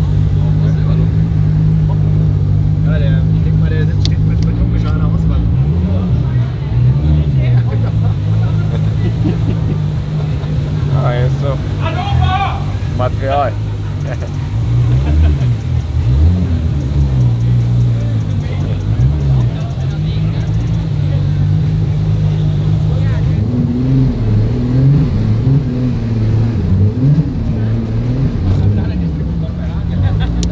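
Car engine running at low speed, heard as a steady low drone from inside the cabin, its note rising and falling a few times. Voices from the crowd outside come in over it.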